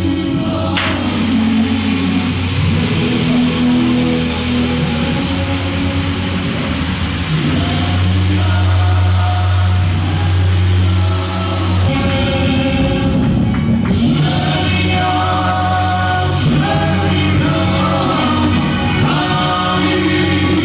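Music: a choir singing over a sustained low note, with the music changing about twelve seconds in.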